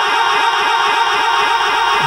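A man singing a long held note with a steady waver in it, in devotional naat singing through a microphone and sound system.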